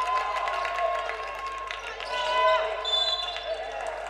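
Live sound of a basketball game on a hardwood court: a basketball being dribbled, with short sneaker squeaks on the floor in the middle and later part.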